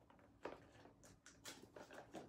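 Near silence with a few faint taps and scuffs of handling: a glass candle jar being slid back into its cardboard box.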